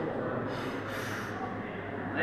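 A sharp, sniffing intake of breath, the deadlifter bracing as she sets up over the bar, lasting under a second, about half a second in. Steady hall background noise runs under it.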